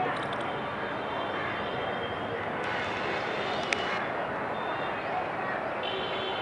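Steady city ambience of traffic noise from the streets, with a few short high chirps just after the start and a single sharp click a little past halfway.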